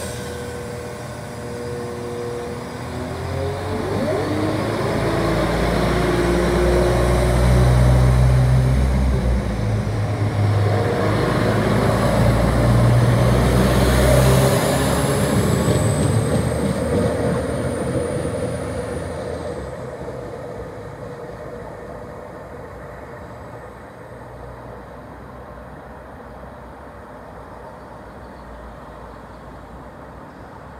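Diesel multiple-unit passenger train pulling away from the platform: its engines rise in pitch and loudness as it accelerates, with a high whine climbing in pitch partway through, then the sound fades as the train moves off.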